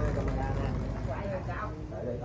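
People talking, with a low steady rumble underneath.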